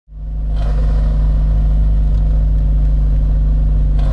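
Citroën Saxo Cup's four-cylinder engine idling steadily, heard from inside the cabin, fading in over the first half second.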